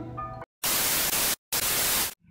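A faint tail of background music fades out, then television static hiss comes in two bursts of under a second each, broken by a brief silent cut.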